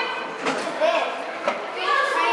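Children's voices and chatter in a large indoor hall, with two short knocks about a second apart.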